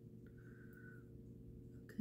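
Near silence: a faint steady electrical hum of room tone, with one faint high steady tone lasting under a second early on.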